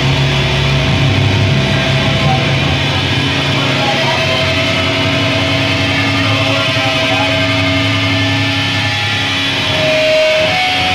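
A live heavy band playing at full volume: heavily distorted guitars and bass in a dense, steady wall of sound with long held low notes.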